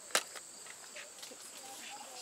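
Steady high-pitched drone of insects, with one sharp click shortly after the start.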